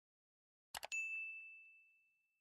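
A single high ding, a bell-like tone that sounds about a second in and rings away, fading out over about a second and a half. A couple of faint clicks come just before it.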